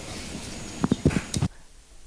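Microphone handling noise: a hiss with a few sharp knocks and clicks that cuts off suddenly about a second and a half in, leaving a faint low hum.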